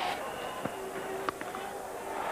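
Stadium crowd noise over a televised cricket match, with a sharp crack of bat on ball as the batsman hits the delivery and a second sharp click a little later. A steady held note sounds underneath through the second half.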